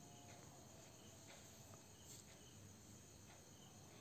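Near silence: faint room tone and hiss in a pause between spoken answers.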